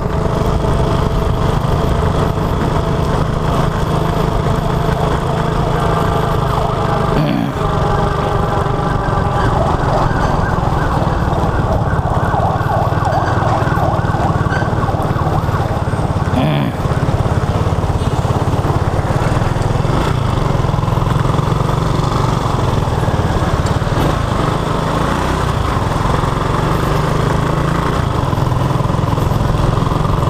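Small motorcycle's engine running steadily while riding through traffic, its note dipping briefly twice.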